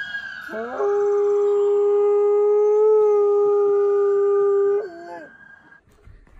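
Dog howling: one long, steady howl of about four seconds that swoops up at the start and slides down at the end.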